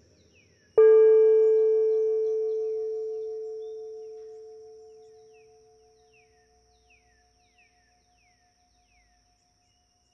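A meditation bell struck once, about a second in, ringing at one steady pitch with several higher overtones and fading away over about six seconds. One upper tone wavers as it lingers, and faint short chirps sound behind it.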